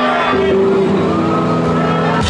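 Amplified electric guitars holding a loud, steady droning chord, with a faint tone gliding upward partway through.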